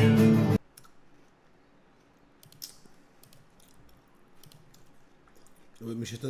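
A nylon-string guitar with a man singing cuts off suddenly about half a second in. What follows is near silence with a few faint clicks.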